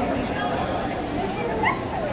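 A dog lets out a short, high-pitched, rising whine about a second and a half in, over steady background chatter.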